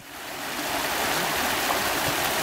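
Shallow river water rushing over a stony bed, a steady wash of flowing water that fades in over the first half second.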